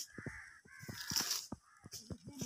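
Two harsh bird calls in the first second, then a loud crunch on dry soil and leaves about a second in.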